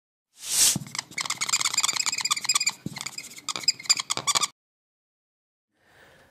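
Intro sound effect: a short whoosh, then a long run of rapid, high-pitched electronic chirping blips broken by brief gaps. The blips stop about a second and a half before the speaking begins.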